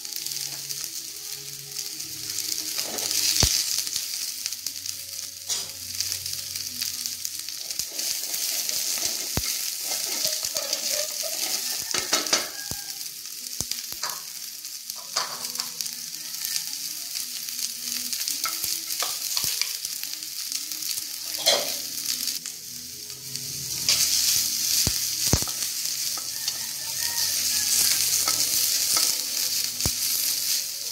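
Sliced onions and garlic sizzling in a large aluminium wok, with a wooden spatula scraping and knocking against the pan as they are stirred. The sizzle swells near the start and again in the last few seconds.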